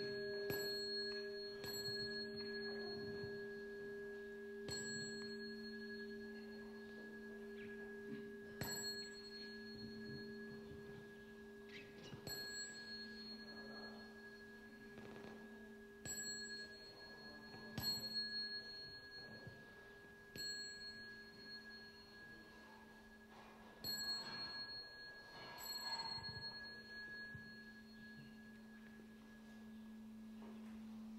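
Faint, sustained ringing of a Buddhist bowl bell, its tones held and slowly fading, with light high metallic chinks every two to four seconds.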